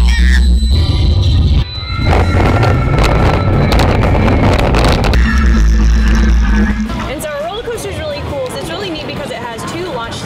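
Roller coaster train running along its track: a loud rumble and rush of wind for the first several seconds, with background music laid over it. From about seven seconds in, riders' voices yell and scream over the ride noise.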